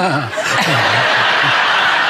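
Studio audience laughing, with a person chuckling in short falling laughs over it.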